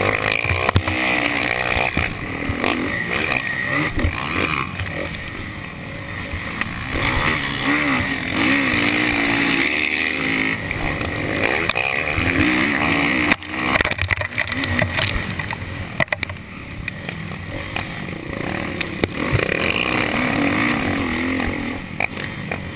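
Motocross dirt bike engine heard on board under racing throttle, its pitch rising and falling over and over as the throttle opens and closes, with a brief dip in level about thirteen seconds in.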